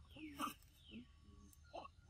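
A few faint, short squeaks and grunts from young macaques tussling with each other.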